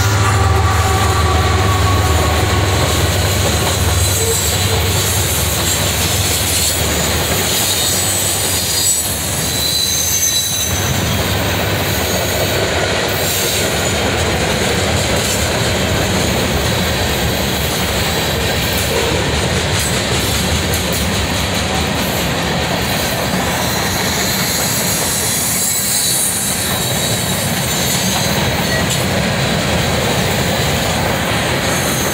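A CSX ES44AH diesel-electric locomotive passes close, its engine's low drone fading over the first few seconds. A long freight train of covered hoppers and coil cars follows, rolling by with a steady loud rumble of wheels on rail and brief high-pitched wheel squeals about a third of the way through.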